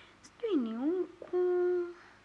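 A person's voice making wordless sounds: a short hum that dips in pitch and rises again, then a second hum held on one steady pitch.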